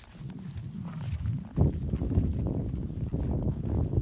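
Tennessee Walking Horse walking on a paved lane: hoofbeats under a low rumble on the microphone, which gets louder about one and a half seconds in.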